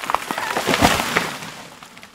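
Recorded sound effect of wood cracking and splintering as a tree is felled, a crackle of sharp snaps that swells to a crash a little under a second in and then dies away.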